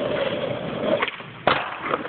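Skateboard wheels rolling on rough asphalt, then a sharp clack about halfway through as the tail is popped for a pop shove-it, a brief lull while the board is in the air, and a louder clack half a second later as it lands and rolls on.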